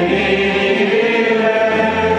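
A choir singing a hymn in Romanian, holding long sustained notes.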